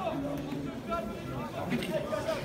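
Several people talking and calling out at once, overlapping voices with no clear words.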